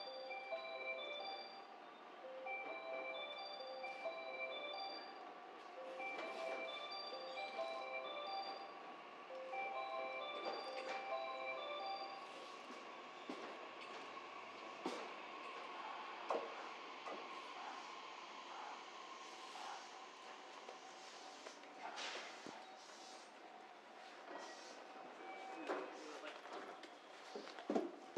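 A melody of bell-like chime notes repeats for about the first twelve seconds. Then a JR West 227 series electric train draws into the platform and stops, with a faint steady whine and scattered clicks and knocks that grow near the end.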